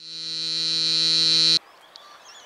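Electronic buzzing tone from the wishing machine, granting a wish. It holds one steady pitch, swells in loudness for about a second and a half, then cuts off suddenly.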